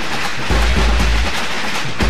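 A string of firecrackers going off in a dense, rapid crackle of pops, over background music with a deep low boom underneath.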